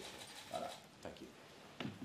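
Quiet room tone with a faint short sound about half a second in and a single sharp click near the end.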